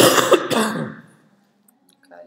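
A man clearing his throat: one loud, rough burst at the start, over within about a second.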